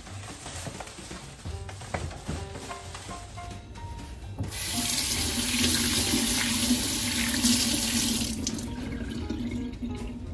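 Kitchen tap running into a stainless steel sink while raw beef is rinsed by hand under the stream. The water starts about halfway through, loud and steady, then eases off near the end.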